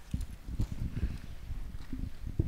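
Microphone handling noise: a quick, irregular run of low thumps and knocks with a few sharper clicks, as a microphone is moved and rubbed.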